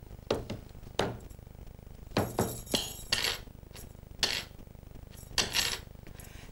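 A hand striking a wooden tabletop in an uneven rhythm: about ten knocks and slaps, some sharp and some broader, tapping out a dance rhythm.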